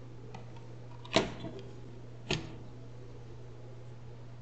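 Two sharp clicks about a second apart as an opened laptop's plastic chassis and parts are handled on a workbench, over a steady low hum.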